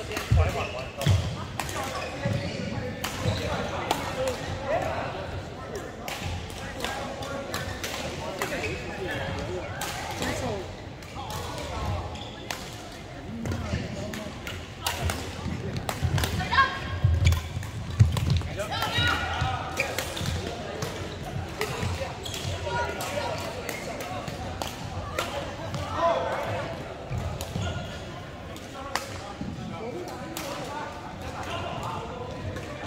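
Badminton play on an indoor court: sharp clicks of rackets hitting the shuttlecock and thuds of footsteps on the court floor, with voices in the background.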